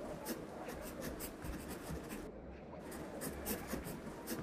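Handwriting on paper: quick runs of scratchy strokes, pausing for about half a second a little past the middle, then starting again.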